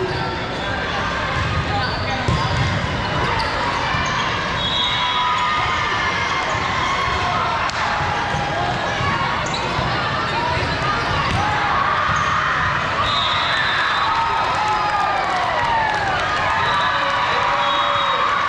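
Busy volleyball hall: volleyballs being hit and bouncing on the floor, against a steady babble of many overlapping voices from players and spectators across several courts.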